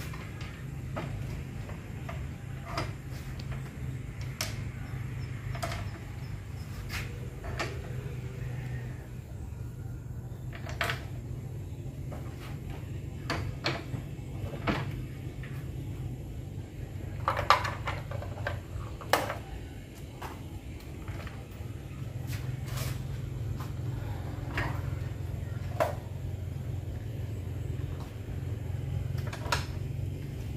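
Irregular knocks and clicks of PSD speaker cabinets and their metal rigging frames being handled and fitted together, with a few sharper knocks about halfway through. A steady low hum runs underneath.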